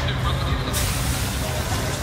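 Busy night-market ambience: a steady low rumble under a crowd murmur, with a broad hiss that starts suddenly under a second in and holds.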